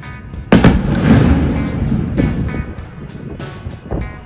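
An aerial firework bursts with a loud bang about half a second in, followed by a rumbling decay lasting over a second, heard over background music with a steady beat.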